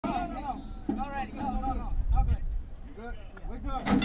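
Indistinct calls and shouts at a horse-racing starting gate as the field is loaded. Just before the end, a sharp clang as the gate springs open and the start bell begins to ring.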